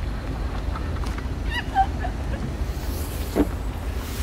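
Steady low background rumble, with one brief high-pitched call about a second and a half in.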